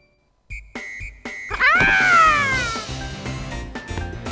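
Cartoon soundtrack: about half a second of silence, then a few short tones and a loud, high call that falls in pitch over about a second, running into rhythmic background music.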